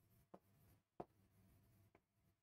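Near silence with two faint taps, about a third of a second and a second in, from a stylus writing on a touchscreen display.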